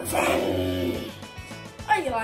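Background music with a drawn-out, high vocal cry in the first second that slides down in pitch, then fades.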